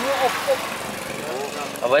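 An older Mercedes-Benz car engine idling steadily, under faint talk.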